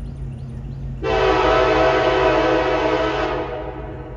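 Horn of a BNSF EMD SD70ACe diesel locomotive leading a freight train: one long blast of several chime tones, starting about a second in and fading out just before the end, over a low steady rumble.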